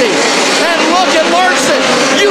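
Several midget race cars' engines running on a dirt oval, their pitch repeatedly falling and rising as they go through the turns. A commentator's voice runs over them.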